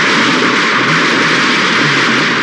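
A string of firecrackers going off on the ground in a loud, continuous crackle of rapid bangs merging into one another.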